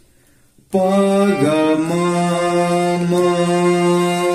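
Harmonium played: about two-thirds of a second in, a reedy note starts, moves quickly through a couple of lower notes, then settles on one long held note.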